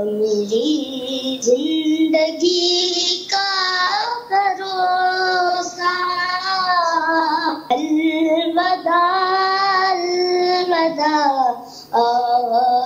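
A single voice singing a verse unaccompanied, in long held notes that waver and glide, with short breaks for breath.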